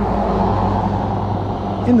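A pickup truck driving past close by, over steady road noise.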